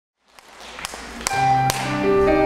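Instrumental ensemble starting a song, fading in from silence: four sharp taps about half a second apart, then sustained piano and bass notes entering near the end.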